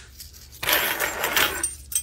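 Heavy metal link chain jangling and rattling as it is lifted and handled, a rustle of links lasting about a second.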